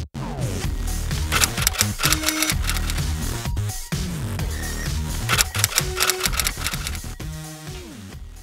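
Typewriter key clacks, runs of quick clicks in the manner of a title being typed out, over background music.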